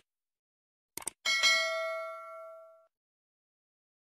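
Subscribe-button animation sound effect: a quick double mouse click about a second in, then a bright notification bell ding that rings out and fades over about a second and a half.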